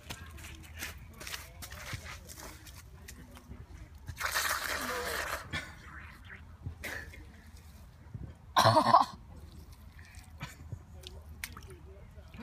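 Quiet wet squelching and slurping as a person sucks muddy puddle water with his mouth. There is a longer hissy rustle about four seconds in, and a short, loud vocal sound about eight and a half seconds in.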